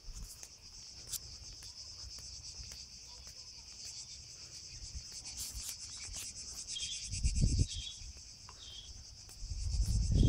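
Steady, high-pitched buzzing chorus of cicadas in the trees. A low rumble hits the microphone twice, about seven seconds in and again at the very end.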